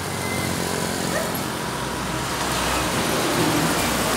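Road traffic: a vehicle approaching on the road, its engine and tyre noise growing steadily louder.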